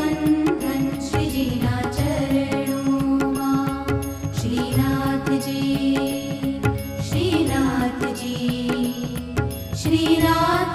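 Instrumental interlude of a Gujarati Haveli Sangeet devotional bhajan: a held, sliding melody line over steady sustained tones, with a regular percussion beat.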